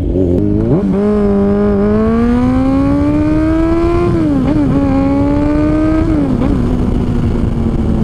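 Kawasaki Z1000 R inline-four engine accelerating through the gears on the move: the pitch climbs for about three seconds, drops at a gear change about four seconds in, climbs again, drops at another shift about six seconds in, then holds steady, over wind noise.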